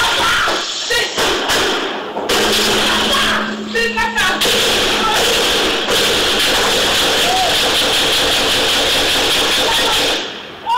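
A loud, distorted recording of a police shootout played back over a hall's speakers: a continuous noisy din with dense cracks and a few brief shouting voices.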